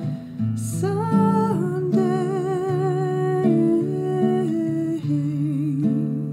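Acoustic guitar playing slow held chords under a wordless hummed melody, the long notes sung with a gentle vibrato.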